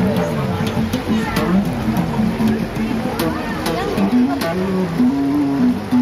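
Electric bass guitar playing a funk line of short plucked notes with sharp attacks, ending on a longer held note near the end.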